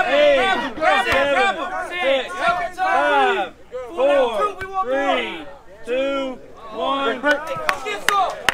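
Men shouting short, loud calls one after another, each call rising and falling in pitch, several a second, with a crowd behind; the yelling breaks off briefly about three and a half seconds in and again near six seconds.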